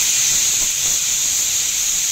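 Pressure cooker on a gas burner venting steam through its weight valve: a loud, steady, high hiss. This is the cooker's pressure 'whistle', the sign that it has come up to pressure.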